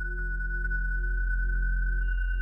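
Ambient background music: a steady high, pure tone held over a low drone, with faint soft ticks about twice a second.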